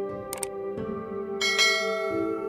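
Background music of steady held tones. About a third of a second in there are two quick clicks, and about a second and a half in a bright bell chime is struck and rings on.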